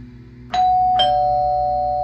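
Electric doorbell chime pressed at a flat's door: a two-note ding-dong, a higher note about half a second in and a lower one half a second later, both ringing on and fading slowly.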